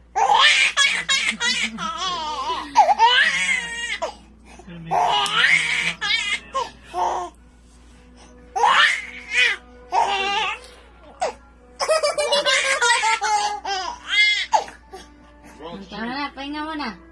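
A baby laughing in repeated bursts, with short pauses between, over background music.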